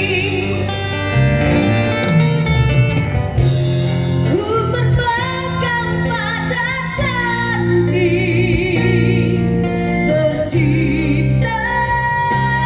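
A woman singing with vibrato into a microphone, amplified through a PA speaker, over a live band with steady bass notes and drums.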